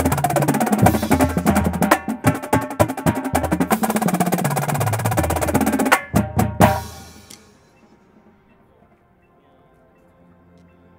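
Marching drumline of Tama snares, tenors, tuned bass drums and crash cymbals playing a loud, dense passage. About six seconds in it closes on three sharp unison hits, and their ring fades within about a second.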